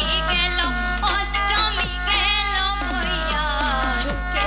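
A Dhamail folk song: a woman sings into a microphone over instrumental accompaniment with steady held tones and a regular beat, heard through a public-address system.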